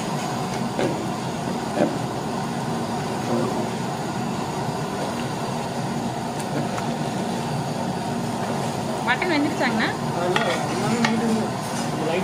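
A metal ladle stirring a large aluminium pot of simmering meat curry, over a steady low rushing cooking noise. Voices come in briefly about three-quarters of the way through.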